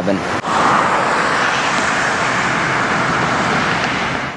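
Steady city street traffic noise, an even rushing hiss of passing cars, starting abruptly about half a second in.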